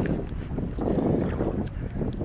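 Wind buffeting a phone's microphone in a low, rough rumble, with faint splashes of water against a canoe.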